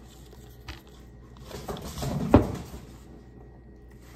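Soft rustling and handling of a small advent package being opened by hand, building to one sharp tap about two and a half seconds in.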